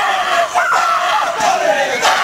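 A team of high school football players shouting a Māori haka together: many male voices in loud, drawn-out shouted calls that fall in pitch.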